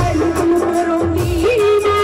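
A woman singing a Punjabi song live into a microphone, holding a long wavering note, over electronic keyboard accompaniment with a regular low beat.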